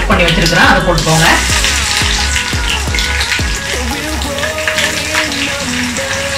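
Hot oil sizzling in an iron kadai as mustard seeds, urad dal and crushed garlic fry in it, with the oil bubbling up vigorously. Background music with a deep bass beat plays over it, the bass stopping about four seconds in.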